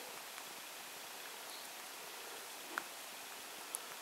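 Steady faint hiss with two faint ticks near the end, fingertip taps on a smartphone's touchscreen keyboard.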